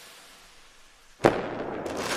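Intro logo-reveal sound effect: a fading noise tail, then about a second in a sharp bang followed by a sustained fizzing hiss with small pops, like a firework burst.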